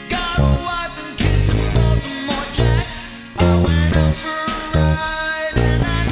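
Höfner electric bass guitar playing a line that links the root notes with added passing notes, over a rock backing with guitar. The low bass notes change about every half second.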